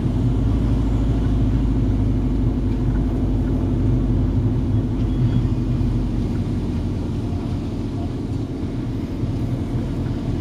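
Volkswagen Golf GTI Edition 35's turbocharged four-cylinder engine running steadily at low revs, heard from inside the cabin as the car rolls slowly along. It eases off a little about two-thirds of the way through.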